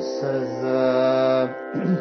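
A male voice sings one long held note from about a quarter second in to about a second and a half, showing the dhaivatam (D1) of raga Suddha Simantini, over a steady drone that continues underneath.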